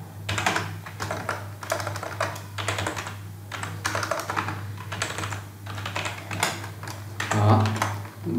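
Typing on a computer keyboard: an irregular run of key clicks as text is deleted and retyped, over a steady low hum.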